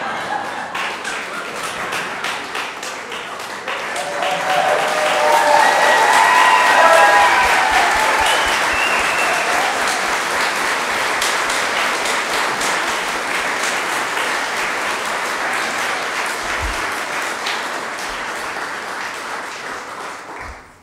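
A congregation applauding, with some cheering voices. The clapping swells about four seconds in, where the voices join, then slowly tapers off.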